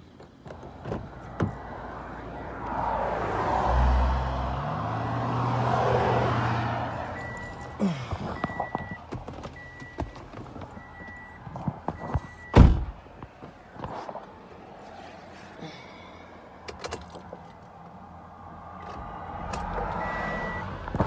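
A car's warning chime beeping evenly, about once a second, stopping at a loud thunk a little past the middle, with small knocks and handling noises around it. Before the chime, a low rumble rises and falls over a few seconds.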